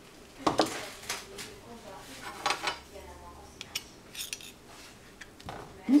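Metal spoons clinking and scraping against a ceramic plate while scoops of ice cream are set down, in a series of separate knocks, the loudest about half a second in.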